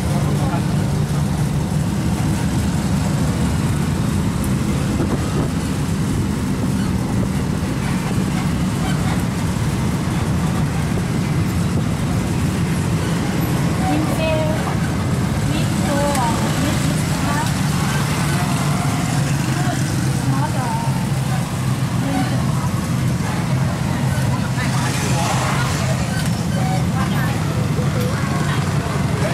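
Engine of an open-sided sightseeing bus running steadily as it drives along, a low even drone heard from the open passenger benches, with faint voices in the background.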